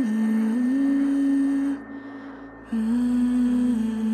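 A voice humming a slow melody in long held notes, in two phrases with a short break about two seconds in.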